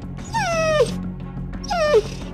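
Small dog giving two short whining yelps, each falling in pitch, the second one near the end, over background music.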